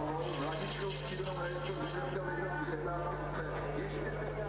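Faint background voices and music from a TV sports broadcast, over a steady low electrical hum.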